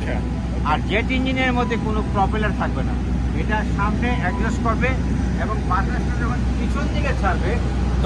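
A man talking throughout, over a steady low hum.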